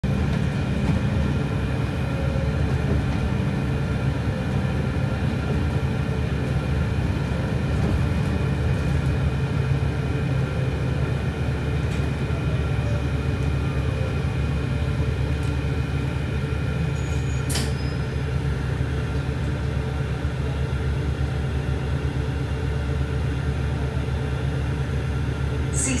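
Inside a moving bus: the steady low rumble of the engine and road noise fills the cabin. A single sharp click comes about two-thirds of the way through.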